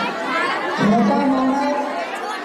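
Crowd of schoolchildren chattering, with one nearby voice standing out about a second in.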